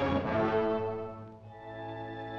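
Orchestral film score: long held chords that die away about one and a half seconds in, then softer sustained notes.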